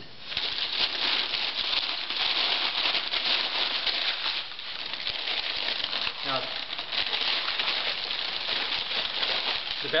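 Sheets of newsprint packing paper crinkling and rustling as a dish is wrapped by hand, in a dense run of fine crackles that eases briefly about halfway through.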